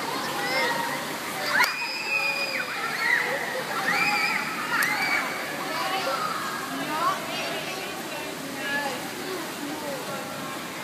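Indoor swimming pool ambience: many children's voices calling out over water splashing and sloshing, with one long high-pitched call about two seconds in.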